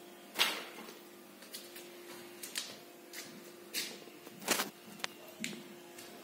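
A handful of short, sharp knocks and clicks at irregular intervals, the loudest about half a second in and another near four and a half seconds, over a faint steady hum.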